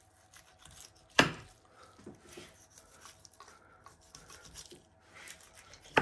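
A knife cutting fallow deer meat away from the thigh bone as the bone is lifted, making faint, irregular scraping and slicing sounds. There is one sharp knock about a second in.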